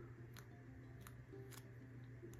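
Near silence: a faint steady room hum with three soft clicks as a small paper sticker is peeled and handled.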